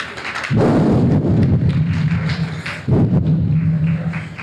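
Loud, low, distorted rumbling over the hall's sound system in two long surges, the first starting about half a second in and the second near three seconds.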